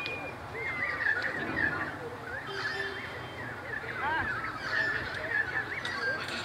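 Distant shouts and calls of footballers and spectators across an open football ground, short and rising and falling in pitch, with a short steady whistle right at the start.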